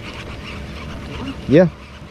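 Baitcasting reel cranked steadily to bring in a hooked speckled trout, a soft, even whir, with a man's short 'yeah' near the end.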